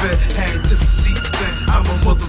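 Hip hop track: a beat with heavy bass and a rapping voice over it.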